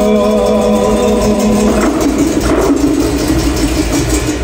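Pastellessa band of bottari playing large wooden barrels and vats in a dense, continuous rhythm. A long held sung note rides over it and fades out about two seconds in.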